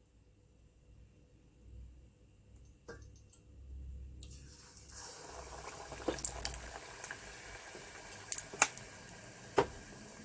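A tempura-battered pineapple ring deep-frying in hot oil in a stainless steel pot. The oil starts sizzling about halfway through as the piece goes in, with scattered sharp pops and crackles.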